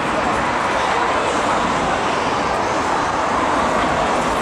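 Busy city street ambience: steady traffic noise with passers-by talking.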